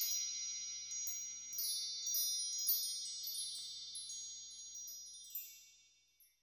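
Wind-chime-style shimmer of a logo sting: a cluster of high, bell-like chime tones struck repeatedly in the first few seconds, ringing on and fading out at about five and a half seconds, then silence.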